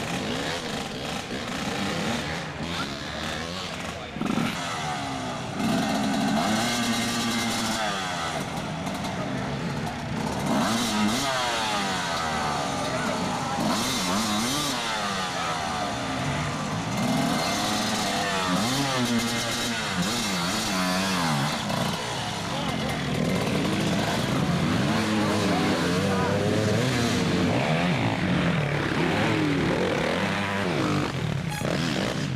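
Dirt bike engines revving hard and unevenly, their pitch rising and falling again and again as the bikes are forced through deep mud under heavy load.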